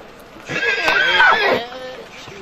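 A horse whinnying once, loud and close, a quavering call of about a second that starts about half a second in.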